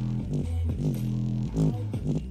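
Bass-heavy music playing loud through a small portable speaker, its passive bass radiator pumping in and out. Deep bass notes slide downward in pitch several times over a low, steady rumble.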